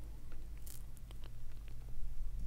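Faint scattered clicks from a computer mouse and keyboard, a handful of them spread over the two seconds, over a low steady hum.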